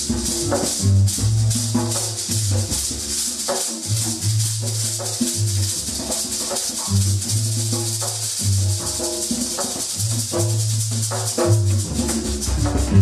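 Live improvised band music: a shaker rattles in a fast, even rhythm over a repeating low bass figure, with short plucked or struck notes in between.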